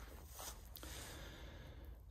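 Quiet pause with faint outdoor background noise and a steady low rumble; no distinct sound event.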